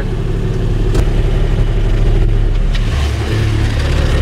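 Kubota RTV-X1100C's three-cylinder diesel engine running at low speed as the utility vehicle creeps forward. Its note changes about a second in and again near three seconds in, with a single sharp knock about a second in.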